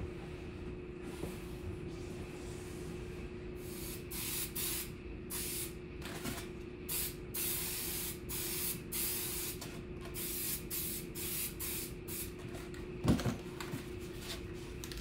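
Aerosol spray adhesive hissing from the can in many short bursts, a fraction of a second to about a second each, as it is sprayed onto rigid foam board. A single thump near the end is the loudest sound.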